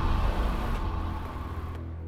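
Fading tail of a cinematic logo sting: a low rumble with sustained tones dying away steadily. Its high hiss cuts off shortly before the end.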